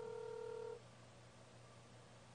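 A steady electronic tone, like a held beep, that cuts off sharply under a second in, leaving only a faint low hum.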